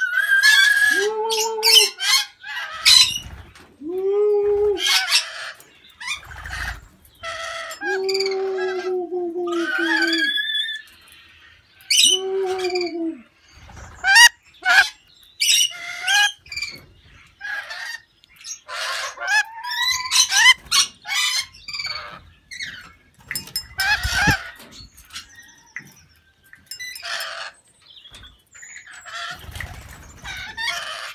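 Rainbow lorikeets and a lory screeching and chattering: a steady stream of short, high-pitched squawks and chirps, with a few longer, lower calls in the first half.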